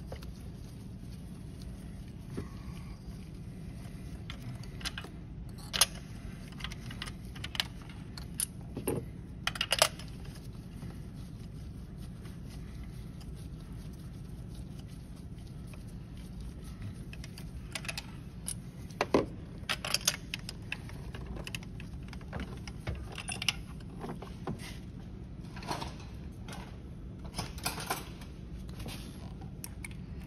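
Scattered light metallic clicks and clinks from a spark plug and hand tools being handled at the engine, coming in a few short clusters over a steady low hum.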